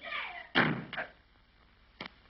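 A door slammed shut about half a second in, followed by a lighter knock just before the one-second mark.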